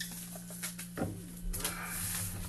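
Boxes of supplies being handled and set onto the shelves of an open mini fridge: a few light knocks and rustles of packaging over a steady low hum.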